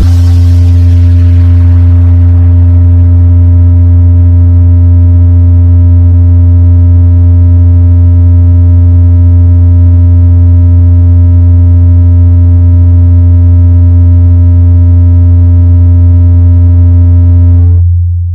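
Bass-boosted soundcheck bass test tone: one very loud, unbroken deep tone held steady, with a fainter higher tone and overtones over it that cut off just before the end.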